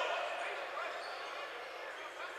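Basketball gym ambience: an even, faint wash of crowd and court noise echoing in the hall, slowly fading.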